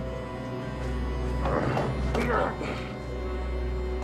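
Dark, tense film score over a steady low tone, with a man's strained grunts and gasps from about one and a half to nearly three seconds in, as he is held by the throat.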